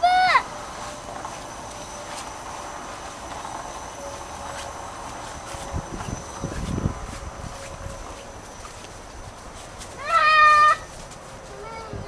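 A toddler's high-pitched calls: a short rising-and-falling squeal right at the start and a longer, held shout about ten seconds in. Faint rustling in between.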